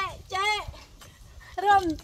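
A woman's high-pitched voice chanting short, repeated "jeh" calls in a rhythm: one about half a second in and another near the end.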